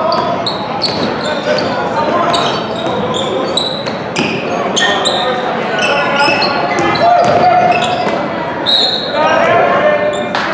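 Basketball being dribbled on a hardwood gym floor, with many brief high sneaker squeaks and indistinct shouts from players and spectators, all echoing in the large gym.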